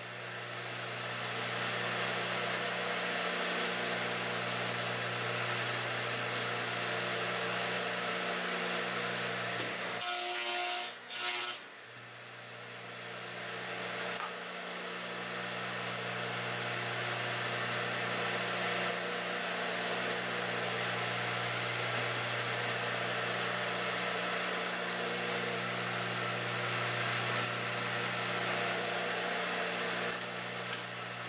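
Craftsman 12-inch radial arm saw running steadily while wooden hive-frame top bars are fed through it to cut rabbets on their ends. The running sound breaks off briefly about ten seconds in, then builds back up.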